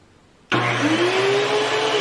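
DeWalt thickness planer and circular saw motors starting together as they are plugged in while switched on, about half a second in: a sudden start, then a whine that climbs in pitch as they spin up and settles into steady running. The combined start-up surge peaks around 108 amperes without popping the breaker.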